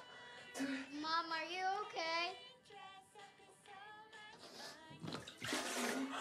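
A woman retching and vomiting into a toilet. Strained, wavering gagging groans come in the first couple of seconds, weaker gags follow, and a loud noisy heave comes near the end.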